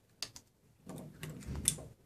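Handling noise from test tubes and rubber balloons at a wooden test-tube rack. Two light ticks come early, then about a second of rubbing and knocking with a sharp click near the end.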